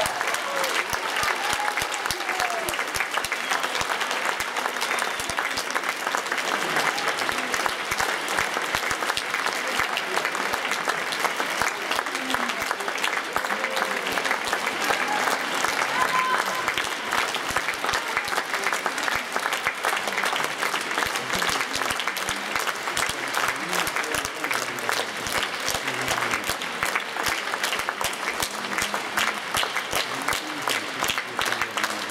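Audience applauding steadily, a dense, even clapping, with a few voices rising over it.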